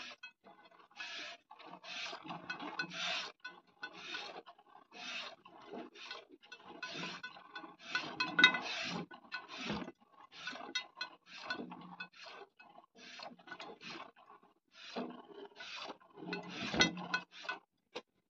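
Cow being hand-milked: steady, rhythmic squirts of milk hissing into a pail, about one to two a second.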